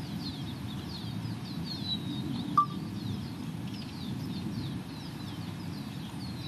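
Small birds chirping over and over in short, quick down-slurred calls, over a steady low outdoor rumble. A single sharp click with a brief beep about two and a half seconds in is the loudest sound.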